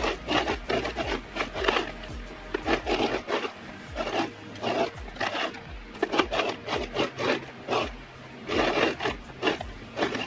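Ankara print fabric rubbing and rasping as it is pushed and guided through a sewing machine, in short irregular strokes about two a second.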